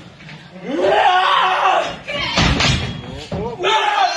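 A person's voice calling out in two stretches, with a couple of thuds in between.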